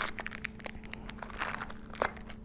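Hands rummaging through small items in an electronics organizer case, a scattered string of light clicks, taps and crinkles.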